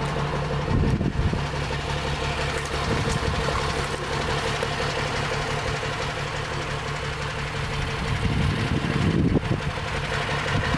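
Fire truck engine idling steadily, a constant low hum, with a couple of brief louder bumps about a second in and again near the end.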